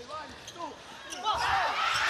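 Sneakers squeaking in short chirps on an indoor volleyball court during a rally, with a few sharp ball contacts. From about a second and a half in, arena crowd cheering swells up.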